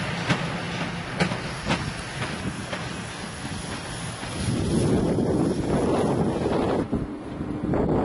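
EU07 electric locomotive running light, its wheels clicking over rail joints and points in the first couple of seconds. From about halfway a louder rushing noise, likely wind on the microphone, builds and drops away near the end.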